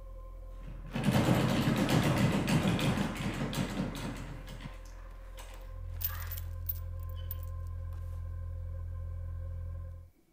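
Film soundtrack: a steady low ambient hum, with a loud rough rushing noise starting about a second in and dying away over about three and a half seconds, after which the low hum swells and holds.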